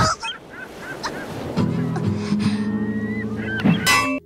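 Seagulls crying over the wash of ocean surf, opening with a loud rush of noise. A sustained low music chord comes in about a second and a half in.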